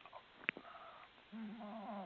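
A faint pause in a phone conversation: a single sharp click about half a second in, then a quiet, low, held voiced hum like a hesitant 'mmm' from the speaker searching for words.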